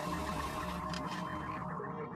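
Steady static hiss from a cartoon submarine's microphone just switched on, over a steady electronic hum.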